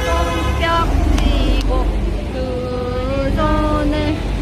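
Steady low rumble of road traffic, with a city bus close by, and a voice singing over it.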